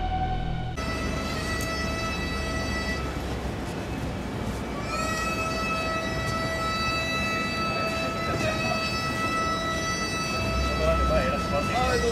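A wind instrument holds long steady notes, changing pitch every few seconds with slight bends, over low street rumble. It follows a burst of title music that cuts off under a second in.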